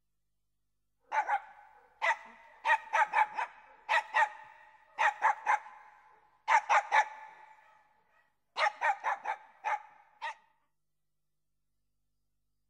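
A dog barking, about twenty barks in quick runs of one to six, each run trailing off in an echo.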